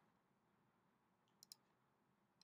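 Near silence, with two faint computer mouse clicks close together about a second and a half in, picking a material from a menu.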